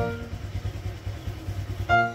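A low, uneven rumble in a pause of the background music, with the last music note dying away at the start.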